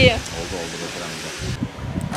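A steady background hum with faint voices, then near the end a sharp click from the car's newly fitted remote central locking as the key fob is pressed.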